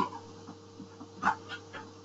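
A quiet pause with a faint steady hum and two or three brief soft noises a little past the middle.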